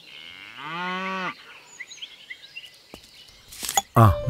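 A cow mooing once: one long call that rises in pitch and then holds for about a second before stopping. Faint bird chirps sound behind it.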